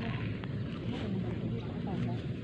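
Steady low outdoor rumble, with faint voices in the background.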